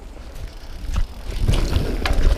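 Mountain bike rolling fast over a dirt trail: tyre rumble and wind buffeting the camera microphone, with scattered knocks and rattles from the bike. It grows louder from about one and a half seconds in.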